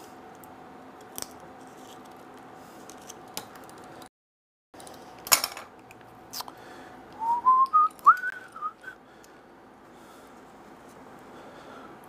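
A person whistling a short run of rising notes about seven seconds in, over a steady background hum. A few sharp clicks from small tools being picked up and put down come just before it, and the sound cuts out briefly about four seconds in.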